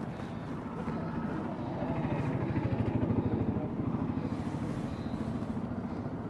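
Diesel engine of an excavator running close by with a fast, even low pulse. It grows louder for a second or so around the middle, then settles back.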